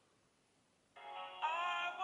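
A recorded singing voice played back: after a second of quiet, a short sung phrase starts abruptly, with one note bending upward partway through.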